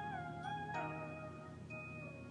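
Quiet background music: a few held notes that dip in pitch and return, then step down to a lower note just under a second in.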